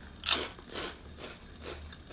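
A crunchy, cream-filled cocoa corn puff (Cheetos Sweetos) bitten into: one sharp crunch about a third of a second in, followed by a few softer crunches as it is chewed.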